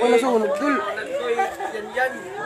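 Several people talking at once, voices overlapping.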